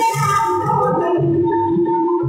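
Loud DJ music played over a wall of horn loudspeakers: a melody with held notes over a repeating bass beat.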